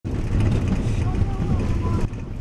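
Steady low rumble of a moving vehicle's engine and tyres, heard from inside its cabin as it drives along an unpaved road.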